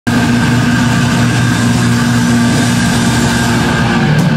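Loud distorted electric guitars and bass holding a steady droning chord, with no drumbeat.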